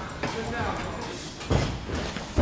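A man laughs, followed by low talk, then a single heavy thud about one and a half seconds in.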